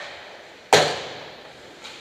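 A single sharp, loud impact during ice hockey play close to the net-mounted camera, about three-quarters of a second in, dying away over half a second, the kind of crack made by a puck or stick hitting at the goal. Fainter clicks of sticks or skates on the ice come at the start and near the end.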